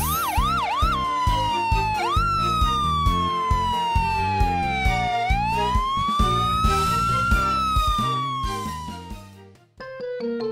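Cartoon ambulance siren sound effect: four quick yelping swoops in the first second, then slow wails that fall, rise and fall again, over upbeat background music with a steady beat. Both fade out just before the end.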